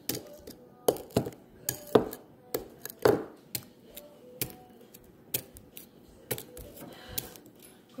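Metal fork clicking and scraping against a ceramic bowl as it works through a sticky mix of burnt chocolate and marshmallow. Irregular sharp clicks, about two or three a second.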